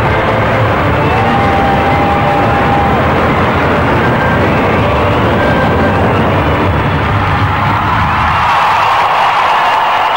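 Music with sustained tones, giving way in the second half to an arena crowd applauding and cheering, which swells toward the end as the skater's program finishes.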